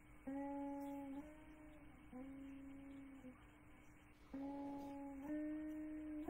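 A slow melody of long held single notes, about five in all, each lasting roughly a second and sliding slightly into pitch, with a short pause in the middle.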